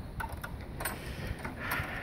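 Low, steady outdoor rumble with a few faint clicks in the first second and a soft rustle about a second and a half in.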